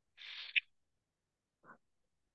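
A short breathy exhale into the microphone ending in a small click, then about a second later a brief, quiet low murmur from a person.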